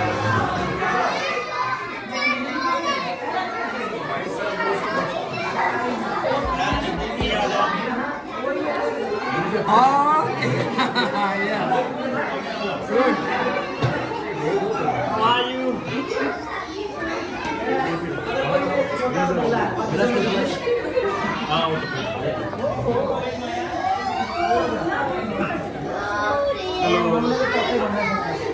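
Many people talking at once, with children's voices among the adults.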